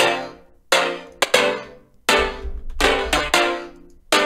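Synthesized chord progression played on the Serum software synthesizer: short chord stabs struck about every 0.6 to 0.8 seconds, each ringing and fading away, with a deep bass note under some of them.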